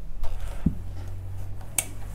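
Electric clothes iron being picked up and set down on the cloth: a dull knock partway through and a sharp click near the end, over a low steady hum.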